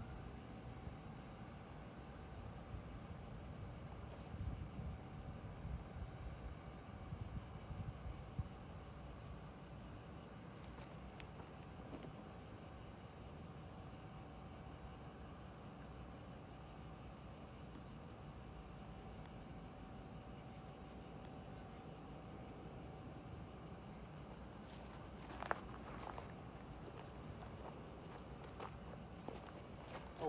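Faint outdoor ambience dominated by a steady, high-pitched insect buzz. A low rumble comes and goes between about four and nine seconds in, and a sharp click stands out about 25 seconds in.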